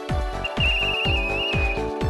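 Electronic background music with a steady kick-drum beat, about two beats a second. Over it, a uniformed marshal's pea whistle trills for about a second and a half starting half a second in, signalling a bus driver who is manoeuvring.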